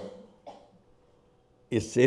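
A man's short cough or throat-clear near the end, a sharp noisy burst that leads straight back into his talking, after a brief pause with only a faint small sound in it.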